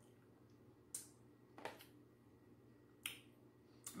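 Faint mouth smacks of someone chewing food, four short wet clicks spaced unevenly over a few seconds.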